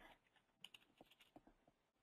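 Faint computer keyboard typing: a handful of quick, light keystrokes about half a second to a second and a half in.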